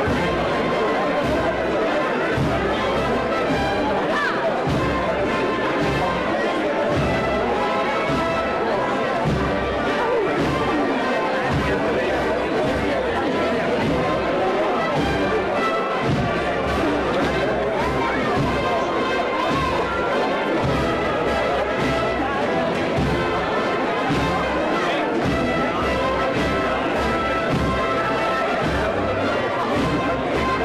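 Wind band playing a processional march with the brass to the fore, over steady crowd chatter.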